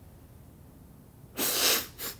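A person sneezing once, loudly, about one and a half seconds in.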